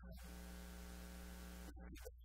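Steady electrical mains hum with a buzzy series of evenly spaced overtones and a hiss, in a pause between a man's words; short bits of his speech at the very start and near the end.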